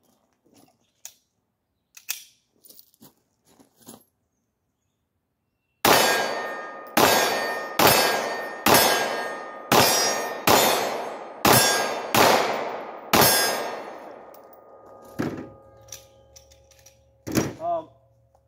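A string of about nine 9mm Glock 17 pistol shots, fired roughly one a second starting about six seconds in, each leaving a ringing tail. A few faint handling clicks come before them.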